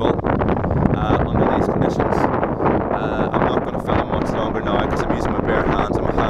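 High wind buffeting the microphone in heavy, continuous gusts, with rapid flapping of a North Face Mountain 25 tent's nylon flysheet under the wind.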